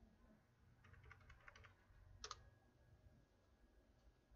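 Faint typing on a computer keyboard: a quick run of key presses as a five-digit number is typed into a spreadsheet cell, then one louder single key press a little after two seconds in, the Enter key moving to the next cell.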